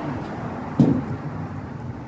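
Street traffic with a steady low rumble, broken just under a second in by one brief, loud sound.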